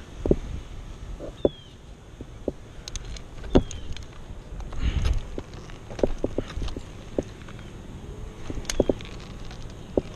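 Scattered clicks and knocks of tree-climbing hardware and rope being handled close to the helmet, with a louder rustling thump about five seconds in.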